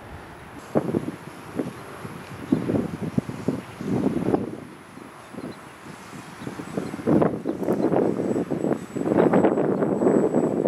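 Wind buffeting the microphone in uneven gusts, growing heavier in the last few seconds.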